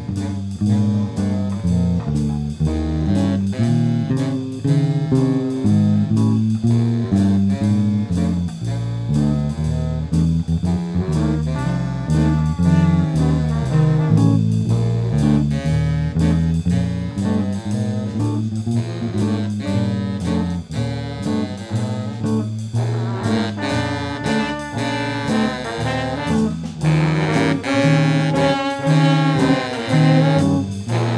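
Student jazz ensemble playing live: saxophone and trombone lines over bass and drum kit. The horns grow fuller and louder about three-quarters of the way through.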